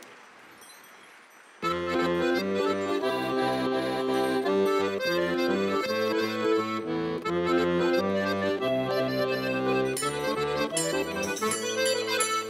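Organetto (diatonic button accordion) begins playing about a second and a half in, a melody in sustained reedy notes over a pulsing bass-and-chord accompaniment.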